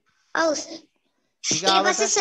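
Speech only: a man speaking into a microphone in two short phrases with a pause between them.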